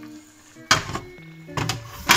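A glass pan lid set down on a metal frying pan: a sharp clink about two-thirds of a second in, then a lighter knock or two as it settles. Soft background music plays underneath.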